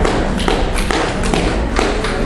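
A run of thumps and knocks, about two or three a second, over the noise of a busy room.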